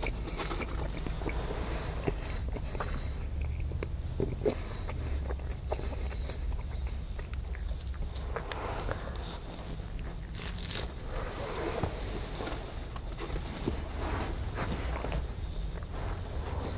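Close-up eating sounds: toast being bitten and chewed, with small crunches and mouth clicks scattered through. A steady low hum runs underneath.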